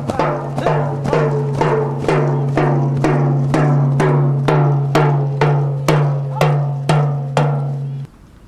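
Drum beaten in a steady marching beat, about two strikes a second, each stroke ringing on over a steady low hum. The beat cuts off suddenly at the end.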